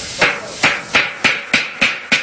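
A long metal ladle knocking against the side of a large metal cooking pot while stirring, in quick, evenly repeated ringing strikes, about three a second.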